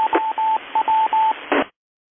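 Two-way radio receive audio with hiss: a single pitched tone keyed in short and long beeps, like Morse code, over the tail of a transmission. About a second and a half in there is a brief burst of noise, then the signal cuts off to dead silence as the squelch closes.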